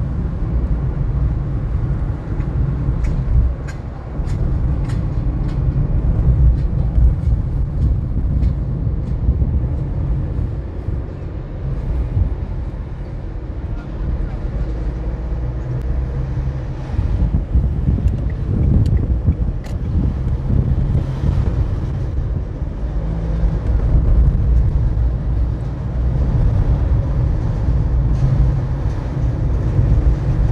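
Steady low rumble of a car driving through city streets, its road and engine noise rising and falling with the traffic, with a few faint clicks about three to five seconds in.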